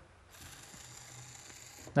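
Small electric motor of a LEGO WeDo 2.0 toy car whirring faintly through its plastic gears as the car reverses and turns at low power. It starts just after the beginning and runs steadily for about a second and a half.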